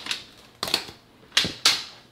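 A few sharp clacks or knocks of hard objects striking, four in two seconds, the last two the loudest.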